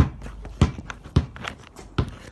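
A basketball being dribbled on hard ground: four steady bounces, a little more than half a second apart.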